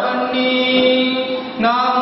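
A voice chanting in long held notes: one steady note for more than a second, then a brief break and a new phrase at another pitch near the end.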